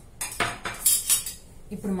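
A quick run of light metallic clinks from stainless steel kitchenware, then a woman's voice begins near the end.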